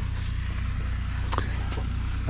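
Steady low rumble, with one sharp click about a second and a half in.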